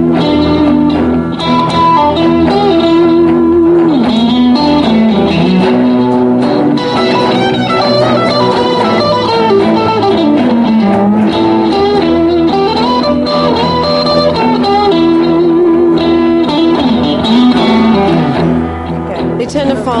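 Solid-body electric guitar through a small amplifier playing a blues lead line: held single notes with wide vibrato and several string bends that glide in pitch.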